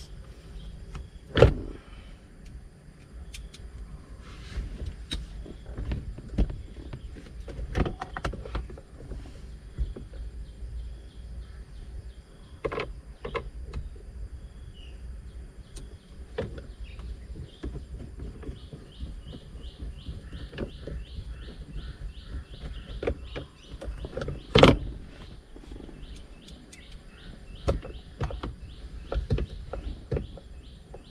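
Plastic console trim and a screwdriver knocking and clicking as a car's centre console is screwed back together, with two sharp, louder knocks, one about a second in and one about five seconds before the end. Over the last third a bird chirps quickly and repeatedly in the background.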